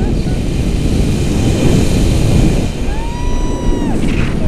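Airflow rushing and buffeting over the action camera's microphone in flight, a loud steady rumble throughout. About three seconds in, a woman's high held whoop lasting about a second.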